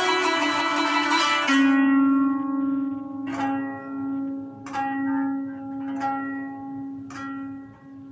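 Kanun, the Turkish plucked zither, played solo: a quick dense run of plucked notes, then a low note held steadily from about a second and a half in while single plucked notes ring out and fade roughly every second and a quarter.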